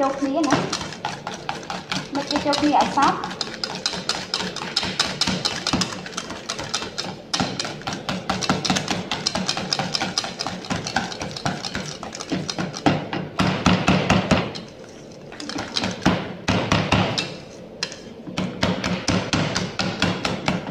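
Wire balloon whisk beating a thick cream mixture in a stainless steel bowl: fast, continuous clinking and scraping of the wires against the metal, pausing briefly twice in the second half.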